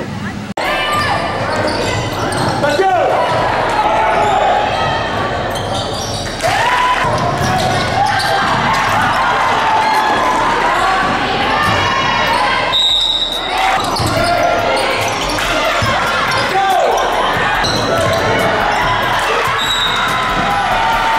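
Live game sound in a school gymnasium: a basketball bouncing on the hardwood floor amid shouts and chatter from players and spectators, echoing in the hall.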